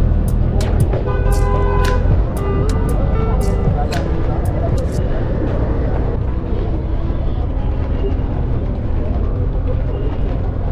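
Busy city street sound: a steady low rumble of traffic, with voices and music mixed in. Sharp clicks come again and again over the first half, then stop.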